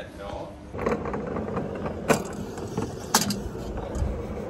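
Alpine coaster sled being hauled up the lift: steady mechanical rumble with three sharp clacks about a second apart.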